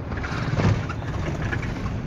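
Engine and road noise heard inside a moving passenger van's cabin: a steady low rumble that swells briefly about half a second in.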